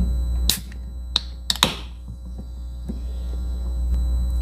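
San Mig Light aluminium beer can being opened by its ring-pull tab: a couple of sharp clicks, then a pop with a short hiss of escaping carbonation about a second and a half in. A steady low electrical hum runs underneath.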